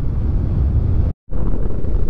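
Wind rushing over the microphone of a camera on a paraglider pilot's harness in flight: a steady low rumble of airflow, broken by a brief complete dropout a little after a second in.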